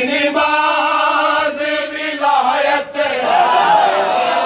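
A group of men chanting a nauha (Urdu mourning lament) in unison, holding long notes broken by short pauses for breath.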